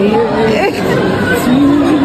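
Voices talking and chattering over one another in a busy indoor room.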